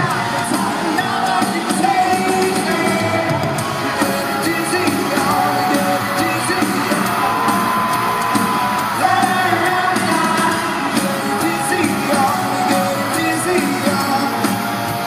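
Live pop-rock band playing in an arena, with the audience yelling and whooping over the music.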